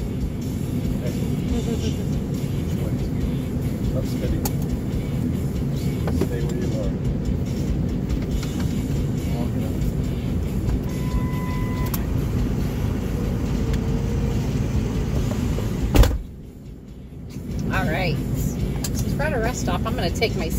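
Steady low hum inside a stationary car's cabin. About sixteen seconds in there is a sharp knock, and then the sound goes muffled for about a second and a half as the recording phone falls off its mount, before it clears again.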